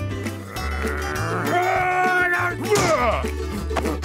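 A cartoon character's long, strained vocal groan, followed a little before the end by a few quick rising-and-falling vocal cries, over background music with a stepping bass line.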